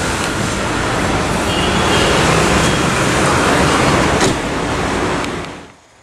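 Steady traffic and vehicle noise, with a single click about four seconds in, fading out near the end.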